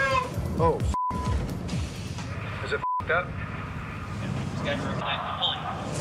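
Two broadcast censor bleeps, steady 1 kHz tones that mask spoken swear words, the first about a second in and a shorter one near the three-second mark. Around them are exclamations, background music and steady low boat and deck noise.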